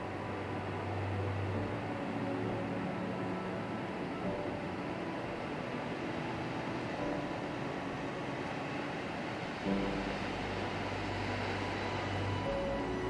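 Calm, melancholy piano and string music, its held chords changing every few seconds, over a steady rush of surf.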